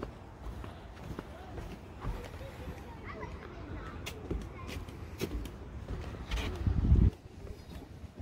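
Footsteps on wooden boardwalk planks, uneven and thudding, with faint voices in the background. About six seconds in, a louder low rumble builds and cuts off suddenly near the seventh second.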